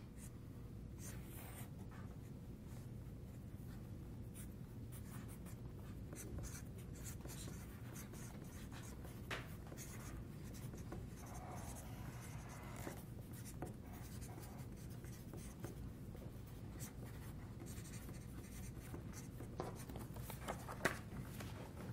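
Felt-tip markers scratching and squeaking on paper in short, irregular strokes, several people drawing at once, faint over a steady low room hum.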